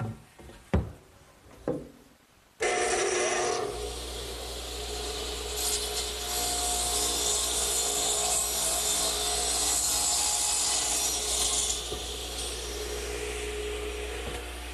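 A few knocks, then a radial arm saw switches on about two and a half seconds in and runs steadily. Its blade, set for a compound angle, cuts through the ends of 2x4s with a loud rasping hiss through the middle of the run before easing back to the motor's hum.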